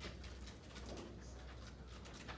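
Faint room tone during a moment of silence: a steady low hum with scattered small clicks and rustles.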